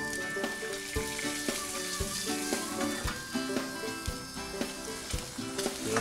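Burger patties sizzling in pans on a gas grill, a steady frying hiss. Background music with a steady beat plays along.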